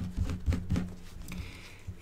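Small square of origami paper being creased and handled between the fingers: light scattered rustles and soft ticks, over a faint steady low hum.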